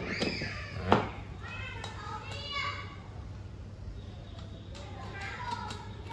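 Children's voices calling and playing in the background, high and sliding in pitch, over a low steady hum, with one sharp knock about a second in.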